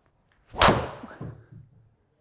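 TaylorMade Stealth 2+ driver striking a golf ball off a tee: one sharp, loud crack about half a second in, ringing down in a small room, followed by a couple of fainter knocks.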